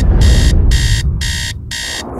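Smartphone alarm ringing: a loud, high electronic tone beeping on and off in a quick repeating pattern, about two to three beeps a second. A low rumble runs underneath.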